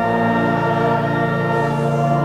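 Church organ playing slow, sustained chords.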